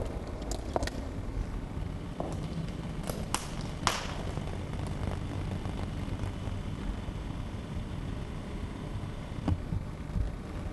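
Steady low rumble of outdoor ambience on a handheld camcorder's microphone, broken by a few sharp clicks and knocks, three of them close together about three to four seconds in and another near the end.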